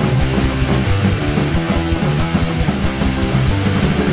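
Punk rock band playing a loud instrumental stretch: electric guitars, bass and drums with no vocals.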